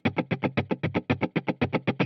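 Electric guitar strummed in steady sixteenth notes: even, short, clipped strokes at about ten a second, with a rhythm-guitar attack that keeps the same time on every stroke.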